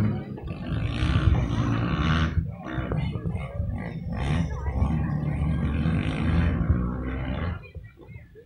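Several dirt bike engines revving up and down hard as racers pass close by, loud and continuous. The sound drops away sharply near the end.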